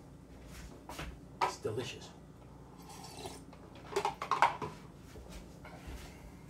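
Kitchen items being handled on a countertop: a few scattered knocks and clatters, the loudest cluster about four seconds in.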